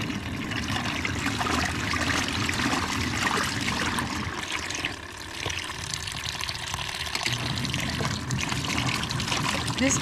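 Rainwater running in a steady stream from a rain barrel's spigot into the tub of a small portable washing machine, splashing onto the clothes and water inside.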